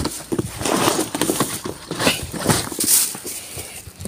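Thin plastic bin bags rustling and crinkling in irregular bursts as gloved hands rummage through bagged clothes and shoes.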